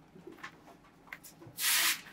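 A wooden stick working pressed flowers on paper: a few faint taps and scrapes, then one brief, loud rubbing swish near the end.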